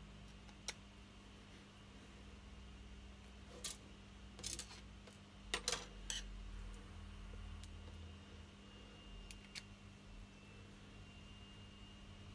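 Small, sparse clicks and taps of a precision screwdriver and the plastic housing of a Samsung 3510 phone being handled while its screws are tightened, the loudest few clustered a little past the middle. A steady low hum runs underneath.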